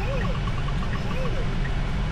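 Steady low road and tyre rumble inside the cabin of a 2026 Tesla Model Y driving itself, with no engine note from the electric drive. A short quick run of faint ticks comes early in the first second.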